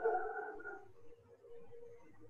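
A high-pitched animal whine: a louder call of about a second at the start, then a fainter, steady held tone.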